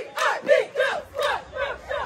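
A cheerleading squad shouting a cheer in unison, short rhythmic shouted syllables about three a second.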